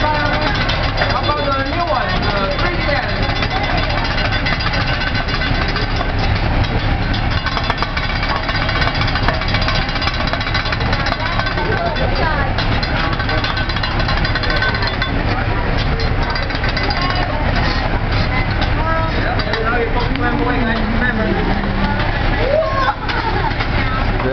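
Metal spatulas scraping and rapidly tapping on a steel teppanyaki griddle as the chef chops and mixes egg into fried rice, over a steady loud din of voices.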